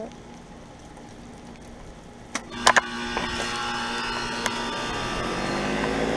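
A 2004 Comfort Range heat pump outdoor unit starting back up after a defrost cycle: a few sharp clicks about two and a half seconds in, then a steady mechanical hum comes on. The hum rises in pitch and grows louder toward the end as the outdoor fan spins up, the unit returning to heat mode.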